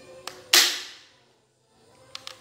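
A toy Glock 26 gel blaster converted to 6 mm BBs fires one sharp shot about half a second in, dying away within half a second, with a faint click just before it. The owner finds its power weak.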